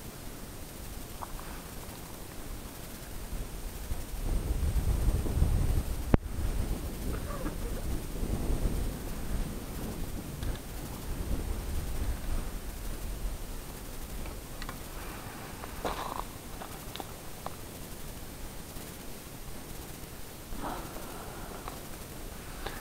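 Wind buffeting the microphone of a body-worn camera, a low rumble that swells about four seconds in and eases after about thirteen seconds, with one sharp click about six seconds in.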